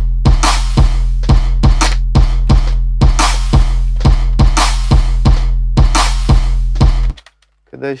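A sampled trap drum loop playing back: a kick with a long deep boom under it, quick repeating hits, and a layered clap with a reverb tail recurring about once a second. It stops abruptly about seven seconds in.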